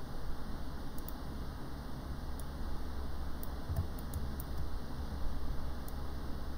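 A few faint, sharp computer mouse clicks over a low, steady room hum, with a small cluster of clicks near the middle.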